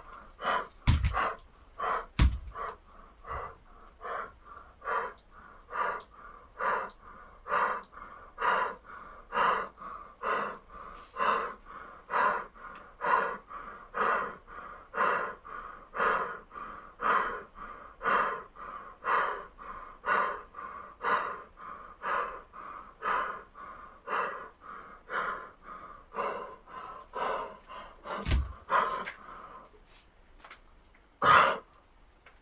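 A man panting hard and evenly, out of breath from exertion, about one heavy breath a second. There are two low thumps in the first few seconds and another near the end.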